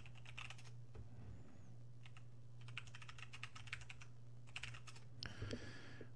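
Faint computer keyboard typing in several short runs of keystrokes with pauses between them, over a steady low hum.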